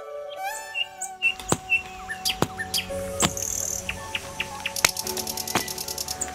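Violin music ends about a second in. After it comes a soft held background tone with many quick bird chirps and sharp clicks.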